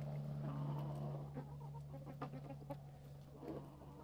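Silkie chickens clucking softly while their beaks tick against dried black soldier fly larvae in a plastic tub.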